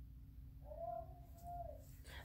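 A faint single drawn-out call, rising and then falling in pitch and lasting a little over a second, over quiet room hum.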